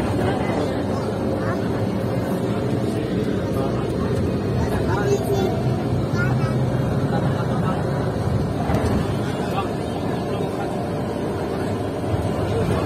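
Steady engine and road noise inside the cabin of a moving tour bus, with indistinct voices over it.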